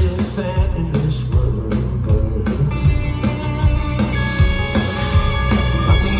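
Live rock band playing loud through a concert PA: drums keeping a steady beat under electric guitar, with held high notes coming in about halfway through.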